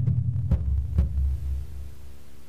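Acoustic drum kit with its old heads tuned low: the last strokes, two deep thuds about half a second apart, ringing on in a low hum that fades near the end.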